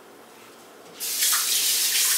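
A kitchen faucet turned on about a second in, running water in a steady, loud stream.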